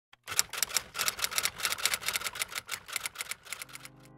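Rapid typewriter-style key clicks, about eight a second, in an unbroken run that stops just before the end as a steady music chord fades in.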